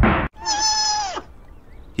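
Sea otter giving one high squeal, held level for under a second and dropping in pitch at the end.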